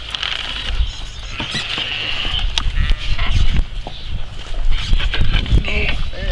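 Sheep bleating, with wind rumbling on the microphone and a few knocks.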